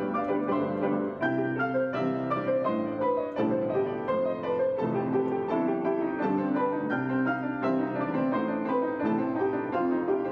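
Two grand pianos jamming together in an improvised duet, one of them a white art-case Steinway grand. The notes and chords flow on steadily without a break.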